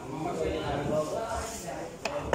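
Background chatter: indistinct voices of people talking in the hall, with no clear words.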